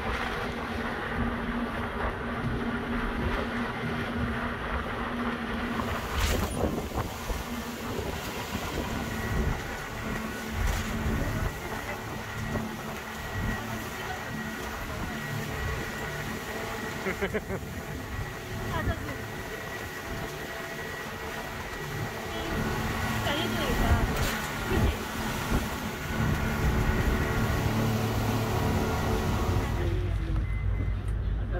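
Motorboat engine running steadily, heard from inside the boat with rushing wind and water noise and a few sharp knocks.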